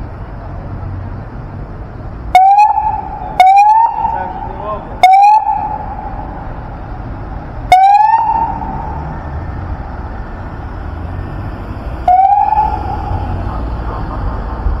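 Police car siren giving five short blips, each a quick rise in pitch held for about half a second, over steady street traffic.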